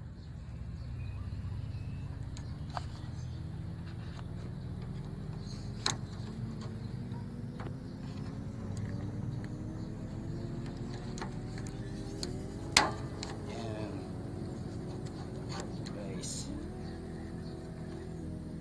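Screwdriver clicking and knocking against the metal linkage of a van's outside door handle, with one sharp knock about six seconds in and a louder one a little past two-thirds through. Behind it, a vehicle engine rises slowly in pitch for a long stretch, then levels off.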